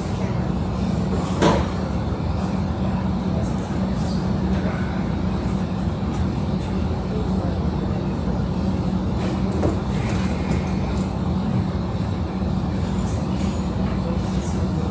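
Steady low room hum with a constant low tone, under faint background chatter. A sharp knock sounds about a second and a half in, with a few fainter clicks later.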